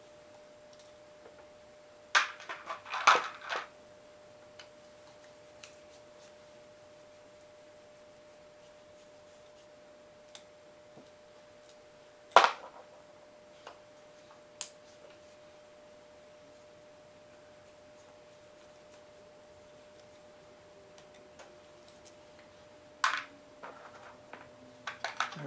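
Screwdriver and small metal carburetor parts clicking and clattering on a towel-covered bench while the carburetor is taken apart. There is a cluster of clicks about two to four seconds in, a single sharp click near the middle, scattered light ticks after it and another click near the end, over a faint steady hum.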